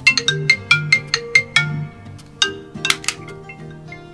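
Mobile phone ringtone: a quick run of bright, marimba-like notes starting suddenly, then a second burst of notes, over a soft background music bed.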